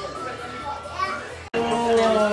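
Children and adults talking in a room. The sound breaks off for an instant about one and a half seconds in, then a louder voice carries on.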